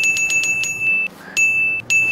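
Edited-in magic sparkle sound effect marking a granted wish. A high, bell-like ringing tone with quick ticks plays in three stretches, the first about a second long and the next two shorter.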